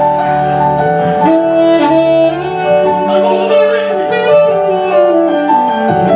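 Saxophone playing a melody of held notes over keyboard accompaniment, as live band music.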